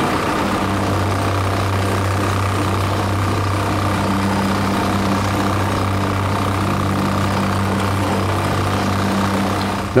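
Plate compactor running steadily as it is pushed over concrete pavers, its engine and vibrating plate making a constant low hum as it works joint sand into the paver joints.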